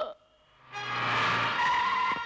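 Film soundtrack sting: after a moment of near quiet, a sudden swelling rush of noise comes in under a held high chord, marking a dramatic cut.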